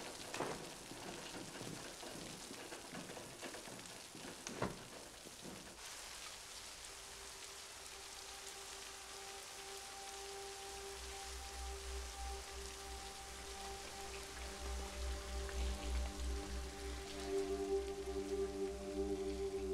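Steady hiss of heavy rain, with two sharp knocks, one near the start and one about four and a half seconds in. About six seconds in, a film score enters under the rain: long held notes over a low pulsing drone that grows louder.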